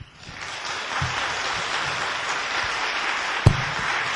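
Audience applauding, swelling over the first second and then steady, with a single loud thump about three and a half seconds in.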